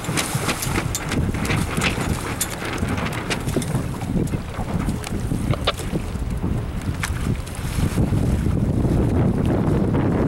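Wind buffeting the microphone on open water: a heavy, uneven rumble, with short sharp splashes and ticks scattered through it.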